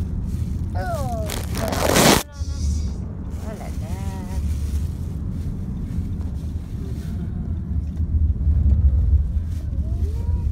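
Car's road and engine rumble heard inside the cabin while driving. About two seconds in, a loud rushing noise swells and cuts off suddenly, with a quiet voice or singing heard briefly before and after it.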